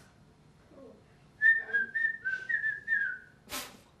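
A woman whistling a short pop-song lick: a run of about seven quick, clear notes stepping up and down, starting about a second and a half in and lasting about two seconds, followed by a short breathy puff.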